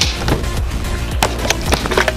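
A pro stunt scooter and its rider crashing: a sharp knock at the start, then a quick run of hard clattering impacts in the second half as the rider and scooter hit the ground. Background music with a steady bass plays underneath.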